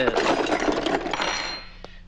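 Metal dental instruments clattering and jingling in an open case as they are rummaged through. The clatter lasts about a second and a half, with a brief ringing note near the end, then dies away.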